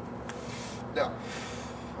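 A man's breathing as he smokes a cigarette: two long, soft breaths, one either side of a short spoken "No" about a second in, over a steady low hum.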